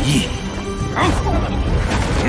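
Soundtrack music under a fight scene's sound effects, with two crashing impacts, one at the start and one about a second in.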